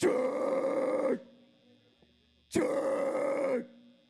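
Two harsh screamed or growled vocal bursts through the PA, each about a second long, the second about two and a half seconds after the first, each ending in a short fading tail. They are a hardcore vocalist's mic check during a soundcheck.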